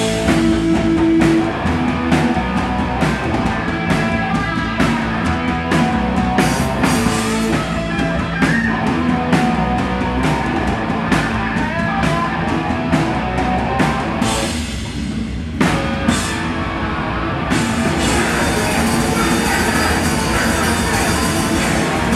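Live hardcore punk band playing a fast song: distorted electric guitar and bass over rapid, pounding drums and cymbals. The sound briefly thins out about fourteen seconds in, then the band plays on.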